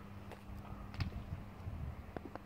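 Footsteps and a few light knocks and clicks, the loudest about halfway through, over a steady low hum.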